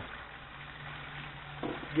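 Battered fish cubes frying in hot oil in an electric deep fryer, a faint steady bubbling sizzle. A low steady hum joins about a third of a second in and holds nearly to the end.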